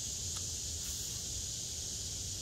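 Steady high-pitched drone of insects, with a low rumble underneath and a faint click about a third of a second in.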